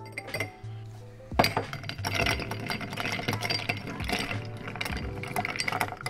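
Ice clinking in a glass mixing glass as vodka is chilled over ice. There is a sudden clatter about a second and a half in, then quick continuous clinking as the ice is stirred with a bar spoon.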